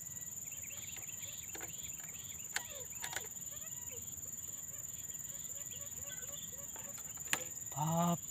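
Steady high-pitched drone of insects with faint bird chirps under it. A few sharp clicks sound in the middle and near the end, and a brief loud voice-like sound comes just before the end.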